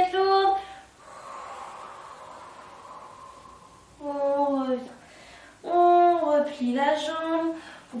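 A woman's long audible breath out under exertion, followed by two voiced sighs from her, the second longer, their pitch falling and bending.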